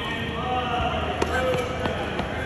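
Tennis balls struck by rackets and bouncing on an indoor hard court: a few sharp knocks ringing in a large hall, with people talking in the background.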